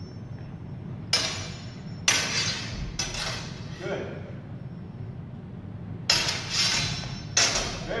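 Training longswords clashing blade on blade in a sparring exchange: about five sharp clashes, each with a brief ring, three in the first three seconds and two more near the end.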